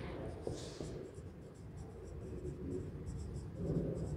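A marker writing on a whiteboard: a quick, faint series of short scratching strokes as a word is written.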